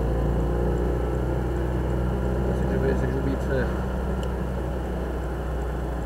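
Citroën 2CV AZAM6's air-cooled flat-twin engine running steadily, heard from inside the cabin as a low drone.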